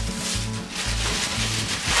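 Background music with a steady, rhythmic bass line, over the crinkling rustle of a clear plastic bag being pulled off a portable toilet.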